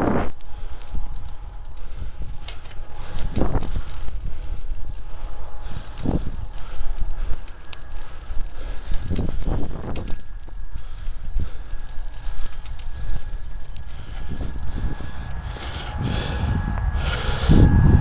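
Bicycle ridden over a rough gravel cycle path: a steady low rumble of tyres on loose stones, broken by a few jolts and rattles as the bike hits bumps in the broken surface, the hardest near the end.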